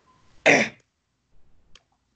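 A person clears their throat once, a short harsh burst about half a second in, followed by a few faint clicks.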